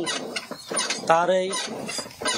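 Chickens clucking close by, with the loudest call about a second in.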